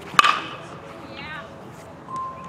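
A baseball bat meeting a pitched ball in batting practice: one sharp crack-ping with a short ring, just after the start.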